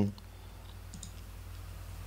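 A couple of faint computer-mouse clicks over a steady low hum.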